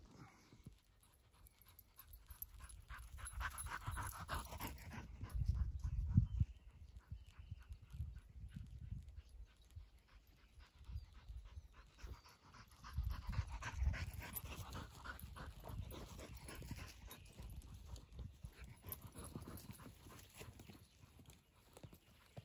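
A dog panting, with low thumps and rustling close to the microphone that are loudest about six and fourteen seconds in.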